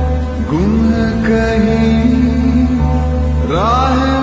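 Background music: a Hindi song over a steady low drone. A voice slides up into long held notes about half a second in and again near the end.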